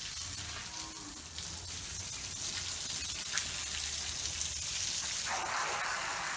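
Dairy cows lowing, a low drawn-out moo, over a steady hiss that grows louder near the end.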